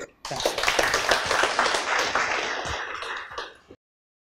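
Audience applauding: a dense patter of many hands clapping that starts suddenly, fades and is cut off abruptly shortly before the end.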